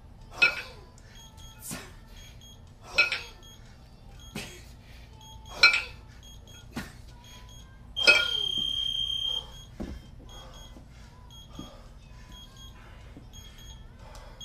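Two 20 kg cast-iron kettlebells clanking sharply, about once every second and a bit, as they are jerked overhead and dropped back into the rack. About eight seconds in, a long electronic timer beep sounds for over a second, marking the end of the four-minute set, followed by a soft thud as the bells are set down.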